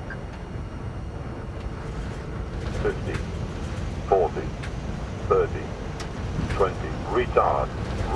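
Airbus A320-family cockpit in the landing flare: a steady rumble of airflow and engines, with a run of short automated altitude callouts about a second apart from about three seconds in, coming faster near the end as the jet reaches the runway.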